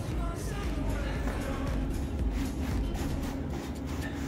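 Background music playing steadily, with a repeated rhythmic pulse.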